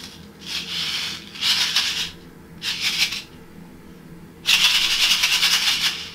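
Sequins rattling inside the sealed window of a paper shaker card as it is shaken by hand: four short shakes, then a louder, faster stretch of shaking for about the last second and a half.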